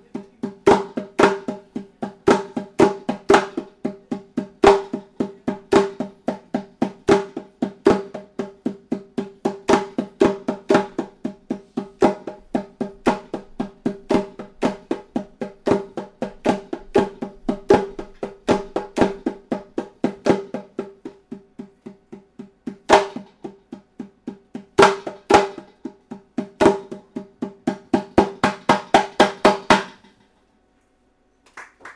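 A small hand drum struck by hand, each stroke ringing at the same pitch, playing an uneven solo rhythm. The strokes thin out about two-thirds of the way through, then speed up into a fast run near the end and stop abruptly.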